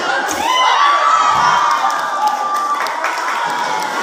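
A large crowd of spectators, many of them children, cheering and shouting at an acrobat's leap. One high voice rises about half a second in and holds a long shout for nearly two seconds.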